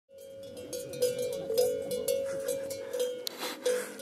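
Cowbells on grazing cows clanking at irregular intervals, each strike ringing on in a clear metallic tone, fading in at the start.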